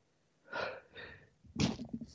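A man sneezing: two short breathy sounds, then the sneeze itself about one and a half seconds in, the loudest sound.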